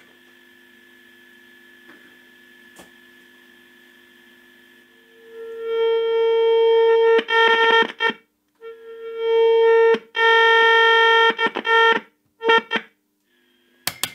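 A steady, buzzy tone from a valve signal tracer's loudspeaker, the signal picked up at a tube's plate. It is faint at first, swells to loud about five seconds in, then cuts out and comes back several times. A few sharp clicks of the attenuator switch come right at the end.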